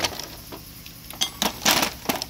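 Steel ratchets clinking against one another as they are handled in a tool cart: a few sharp metallic clicks a little past one second in, then a louder clatter near the end.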